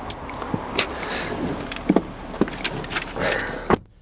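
A person climbing into the driver's seat of a Honda Jazz: scattered clicks, knocks and rustling over outdoor background noise. Near the end, a single sharp thud of the car door shutting, after which the outside noise drops away.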